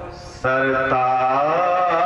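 A man's amplified singing voice chanting a devotional naat. It breaks off briefly with a soft breath near the start, then comes back about half a second in with long held notes that bend up and down in pitch.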